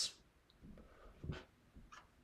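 A man's faint breathing between phrases, with one short breathy sound about a second and a quarter in.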